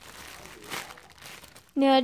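Clear plastic packaging bag crinkling quietly as a hand squeezes the squishy toy sealed inside it.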